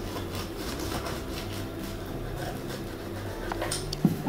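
Metal pizza-cutter wheel rolling through the baked pastry crust of an apple cake, a quiet steady scraping. A couple of light clicks come near the end.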